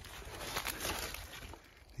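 Footsteps and brushing through dry leaf litter and bare twigs, a crackling rustle that dies down about a second and a half in.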